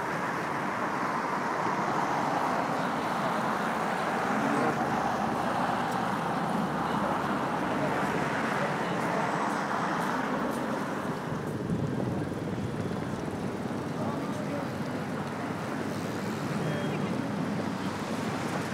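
City street ambience: road traffic going by, with the chatter of passers-by in the background. The traffic is heavier through the first ten seconds or so, then eases.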